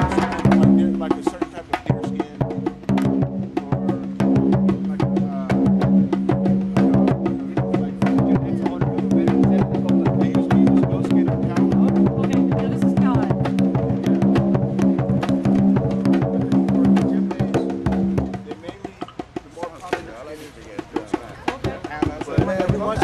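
Drums played together in a fast, dense rhythm over a steady sustained tone, stopping about eighteen seconds in; quieter talking follows.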